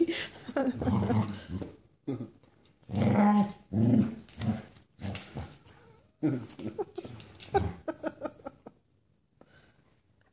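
A dog growling and grumbling in play, in several bursts of a second or two each, with a laugh from a person at the start; the sounds stop shortly before the end.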